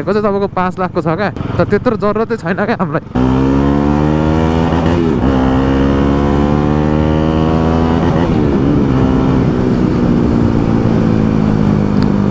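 From about three seconds in, a motorcycle engine running steadily while riding, heard from the rider's seat. Its note eases slowly lower, with two brief wavers in pitch.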